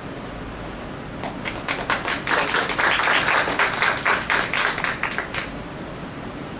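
Small audience applauding: scattered claps start about a second in, build to a dense patter and die away shortly before the end.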